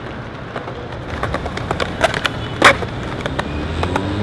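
Skateboard wheels rolling over stone paving slabs: a steady low rumble with scattered clicks, and one sharper knock a little over two and a half seconds in.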